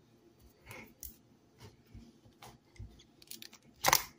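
Plastic screw cap being twisted open on a PET bottle: a scatter of small, separate clicks and crackles as the cap turns, with a louder cluster of clicks near the end.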